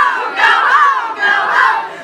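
A large group of children singing loudly together in unison, many voices at once, with a brief break just at the end before the next held note.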